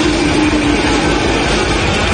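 Live death metal played loud: very fast double-bass kick drumming under heavily distorted guitars, a dense wall of sound.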